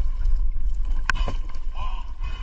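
Wind buffeting the microphone and water against a small wooden canoe, with one sharp knock about a second in as the speared fish and spear are hauled against the wooden hull.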